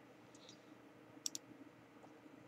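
Near silence: faint room tone with a few small, high clicks, a quick double click about a second and a quarter in.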